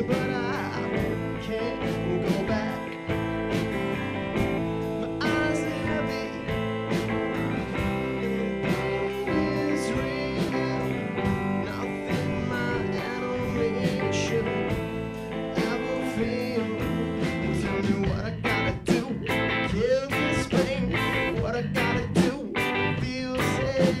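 Live rock band playing a slow song: electric guitar over electric bass and a drum kit. The drum hits grow sharper and more frequent in the last few seconds, and a voice begins singing right at the end.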